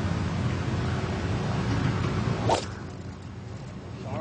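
A golf club striking a ball on a drive: one sharp crack about two and a half seconds in, over a steady outdoor background hiss that drops away after the hit.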